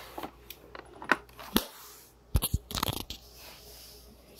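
Plastic clicks and knocks from a Roomba robot vacuum being handled off and back onto the floor during its cliff-sensor test, with a heavier knock about one and a half seconds in and a quick cluster of clicks near the three-second mark.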